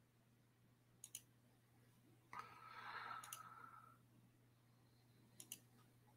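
Near silence with three faint computer mouse clicks, each a quick press-and-release pair: about a second in, just past three seconds, and near the end. A brief soft rush of noise sits between the first two clicks.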